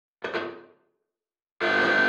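Intro logo sting: two short pitched musical hits, each starting suddenly and ringing out. The first is brief and comes just after the start; the second, longer and louder, comes about one and a half seconds in.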